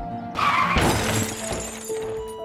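Glass-shattering sound effect: one sudden crash about half a second in that dies away over about a second, over sustained music.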